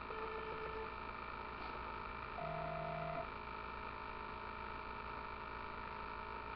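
Steady electrical hum and hiss, broken by two short steady tones: one during the first second, and a second, pitched higher with a low tone under it, lasting under a second about two and a half seconds in.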